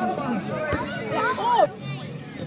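Children's voices shouting and calling out during outdoor football play, with a single thump about a third of the way in.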